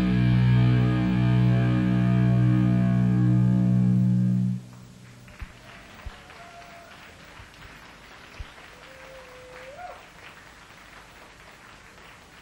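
Rock band's held closing chord on electric guitar and bass, ringing steadily and then cut off abruptly about four and a half seconds in. After that only low background noise with a few faint clicks and two faint whistle-like tones.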